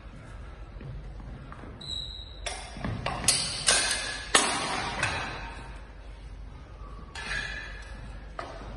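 Steel sidesword blades and bucklers clashing in a quick exchange: a brief ring about two seconds in, then four sharp, ringing strikes in quick succession about halfway through, and another hit near the end, echoing in a large hall.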